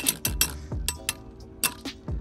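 Two metal Beyblades, Earth Eagle and Rock Scorpio, spinning in a plastic stadium and knocking against each other, giving an irregular run of sharp metallic clicks and clinks.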